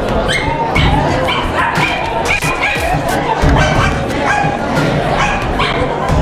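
A dog yipping over and over, short high calls about twice a second, over voices and a low beat.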